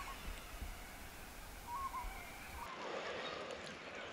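Faint riverside quiet with a bird calling softly in short hooting notes, one at the start and a couple about two seconds in.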